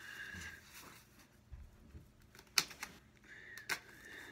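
Cardboard packaging being handled and opened: faint rustling with two sharp clicks, one about two and a half seconds in and one near the end.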